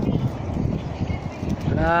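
Low rumble of wind on the microphone, then near the end a person calls out a long, loud "ah" that falls in pitch.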